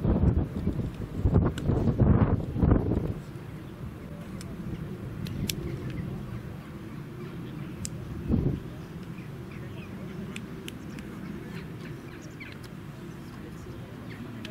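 Wind buffeting the camera microphone in loud low gusts during the first three seconds and once more briefly about eight seconds in, over faint voices of spectators at an outdoor football pitch.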